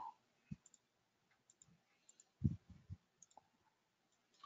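Faint clicks of a computer mouse and keyboard in a quiet room while text is selected and typed. There is a short low knock about half a second in and a quick cluster of low knocks around two and a half seconds in.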